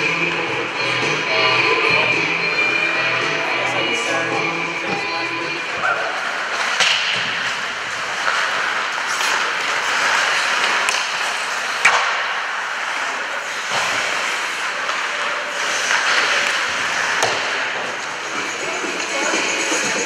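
Music with ice hockey play on the rink: skate blades scraping the ice and sharp clacks of sticks and puck. The loudest clack comes about twelve seconds in.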